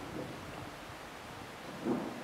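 Steady low background noise of a recorded talk (room tone and hiss) during a pause in speech, with a brief vocal sound, like a breath, just before speaking resumes near the end.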